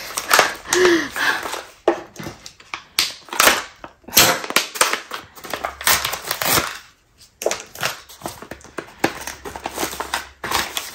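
A pouch of packaging being torn open and crumpled in the hands: irregular crinkling and rustling bursts, with a brief pause about seven seconds in.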